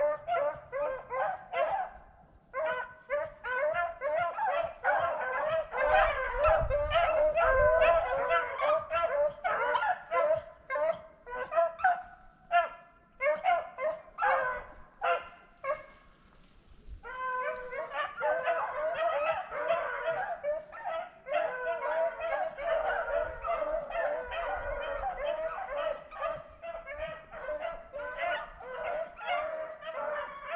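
Rabbit-hunting dogs baying and yelping almost without a break as they run a rabbit, the calls overlapping, with short lulls about two seconds in and again past the middle.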